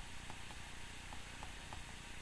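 Faint, irregular ticks of a stylus tapping on a tablet screen during handwriting, several a second, over a low steady hiss.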